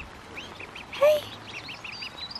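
Half-grown ducklings calling: a fast, steady run of short, high peeps. There is one brief lower, louder sound about a second in.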